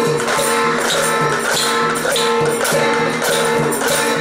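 Thai folk-dance music played by a school percussion ensemble with hand drums: a steady beat of sharp strikes a little under twice a second over a held melodic line.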